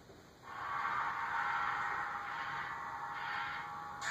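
Thin, tinny audio from a video playing through a small device's speaker, cutting in suddenly about half a second in and then holding steady.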